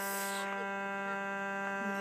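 A steady, unchanging drone with a low pitch and many even overtones: the noise that sounds like a distant fog horn but is not one.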